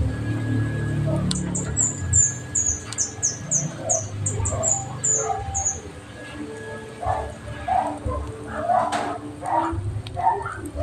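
A bird singing a quick run of short, high notes, each falling in pitch, about three a second, for some four seconds starting about a second in. Shorter, lower sounds come in over the second half.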